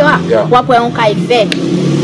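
A woman speaking, with a steady low hum under her voice throughout.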